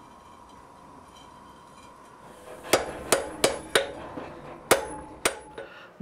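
Hand hammer striking a red-hot steel bar on the anvil, about six ringing blows from about halfway in: four in quick succession, then two more spaced apart. The blows forge the bend that starts the curved bit of a pair of bolt tongs.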